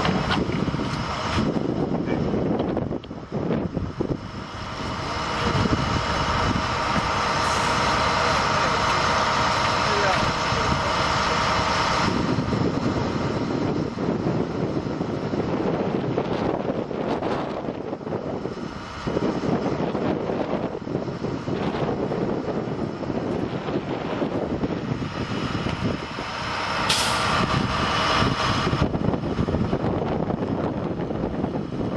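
Vehicle engines idling steadily, with indistinct voices over them. A short hiss comes near the end.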